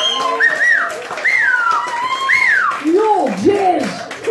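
Human whistles: three high swoops, each rising then falling, about a second apart, over a faint steady tone. Near the end come two lower, gliding vocal whoops.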